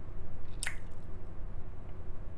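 A single short click from the man's mouth about half a second in, over a steady low hum.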